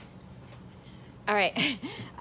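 Quiet room with a low steady hum, then about a second in a woman's voice breaks in with a loud, drawn-out exclamation whose pitch slides up and down.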